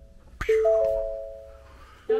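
Ford Bronco's in-cabin warning chime with the ignition on: a three-note ding, the notes entering one after another and fading away, repeating about every 1.6 s. A short click just before the chime, about half a second in.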